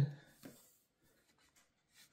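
Faint handling noises: light rubbing and a few soft clicks as hands pick up a small laser-cut wooden model boat hull from a countertop, with one small knock about half a second in.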